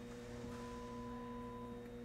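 Low, steady electrical hum, with a faint higher tone held for about a second in the middle; no stitching knocks are heard.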